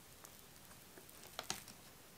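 Fingers working into a pot of Lush's Coconut Mousse with Summer Fruits fresh face mask, a thick paste, giving only a few faint small clicks, the loudest about one and a half seconds in. The mask makes none of the crackly air-bubble popping that a whipped mousse would.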